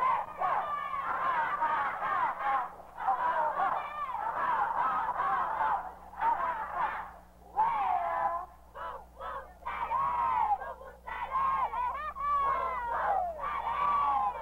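Many high young voices shouting and calling over one another, on a thin, muffled old film soundtrack with a low steady hum underneath.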